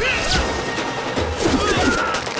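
Film fight sound effects: hard punch and smash hits, one right at the start and more about a second and a half in, over a dramatic background score.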